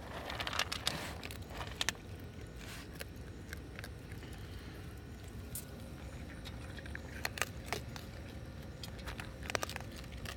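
Raccoon eating dry kibble from a metal bowl: scattered sharp crunches and clicks of kibble against the bowl, with a rustling burst in the first second.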